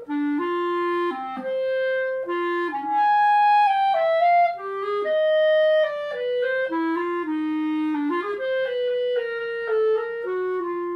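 Backun Protégé B-flat clarinet in grenadilla wood being played solo: a melodic line of held notes stepping up and down, with a short breath break right at the start.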